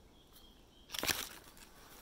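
A short rustle of the daysack's green fabric being handled, about a second in.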